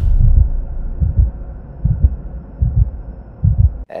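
Edited intro sound effect: deep bass thumps, about one a second, over a low drone, cutting off suddenly just before the end.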